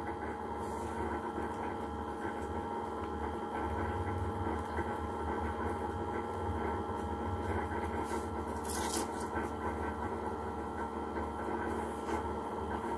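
Steady low hum with faint constant tones in a small room, and about nine seconds in a short soft rustle of a small paper slip being folded by hand.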